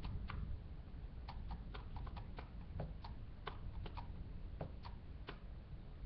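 Irregular, fairly quiet clicks from a computer keyboard, about two or three a second, over a steady low hum.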